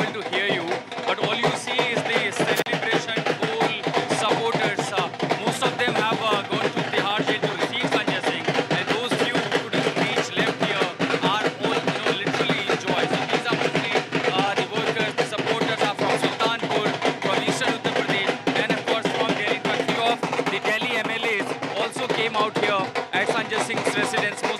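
Dhol drums beaten in a fast, steady rhythm, with a crowd of voices shouting over them, loud throughout.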